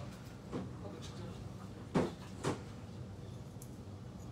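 Three short knocks or bumps over low room hum: a faint one about half a second in, the loudest about two seconds in, and another half a second after it.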